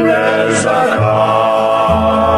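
Slovenian folk-pop band song: voices singing over the band's accompaniment, with a bass line underneath and a brief cymbal-like hiss about half a second in.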